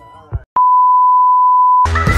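A loud, steady electronic beep on one pitch, lasting a little over a second and stopping abruptly.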